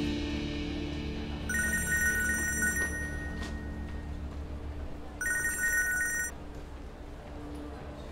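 Mobile phone ringing with a trilling electronic ringtone, two rings, the first about two seconds long and the second shorter, over background music that fades away about five seconds in.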